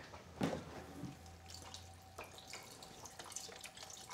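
Faint handling of a carton of vegetable stock, with a few small clicks as it is opened, then stock pouring into an empty stainless steel pot near the end.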